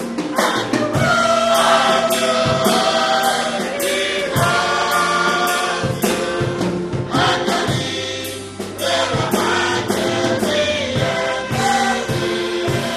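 Gospel choir singing with a band, over a steady drum beat.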